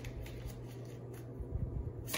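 A deck of tarot cards being handled and shuffled: quiet at first, with the shuffling noise building near the end. A steady low hum runs underneath.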